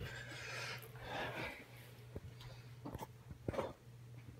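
Handling noise from the phone as it is moved, two soft swishes in the first half, then a few light clicks, over a steady low hum.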